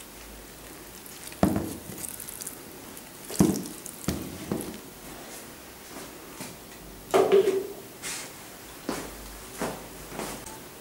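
Water from a small plastic watering can dripping and splashing onto soil in a plastic tub. Several irregular knocks and bumps are heard among it.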